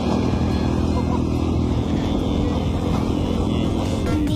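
Motorcycle engine running steadily as the bike carries its riders along a road.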